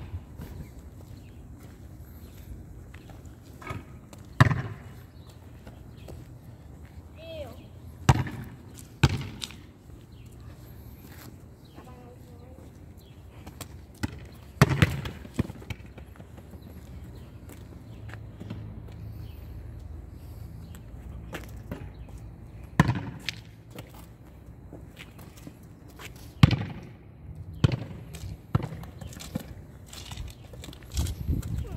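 A basketball hitting an outdoor asphalt court, a sharp thud every few seconds, about eight in all, over a steady low rumble.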